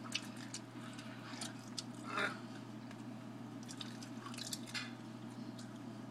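Faint wet chewing and small mouth clicks of people eating canned sardines, with a brief louder mouth sound about two seconds in.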